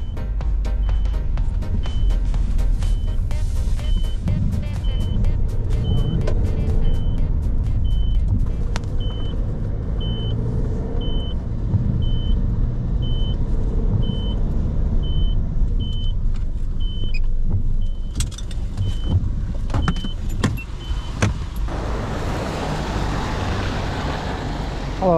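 Inside a car driving on wet roads: a steady engine and tyre rumble, with a regular short high-pitched tick repeating a little faster than once a second through most of it. Near the end a broad hiss of rain and road noise comes in.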